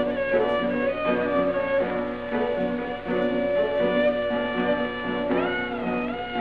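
Instrumental break of an old Greek song recording: a violin carries the melody over a rhythmic lower accompaniment that pulses with the beat. A singing voice comes back in near the end.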